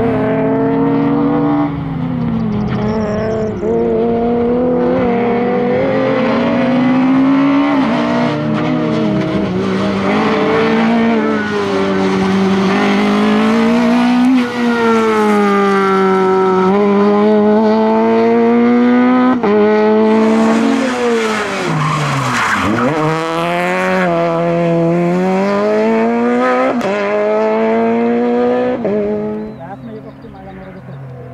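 Peugeot 208 R2 rally car's 1.6-litre four-cylinder engine revving hard, its pitch climbing and falling again and again with gear changes and lifts. About two-thirds of the way through, the revs drop deeply and climb straight back as the tyres squeal. The engine fades sharply into the distance near the end.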